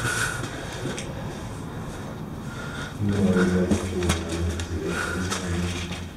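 Footsteps and scuffs echoing in a concrete drainage tunnel. A steady low hum sets in about halfway through.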